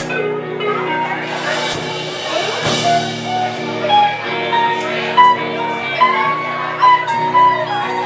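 Live band playing amplified music: electric guitars, bass and drum kit, with a held, stepping melody line over steady chords and a few sharp drum hits in the second half.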